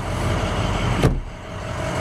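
Rustling as a pickup crew cab's rear seat is handled, then a single sharp latch click about a second in as the seat locks back into place.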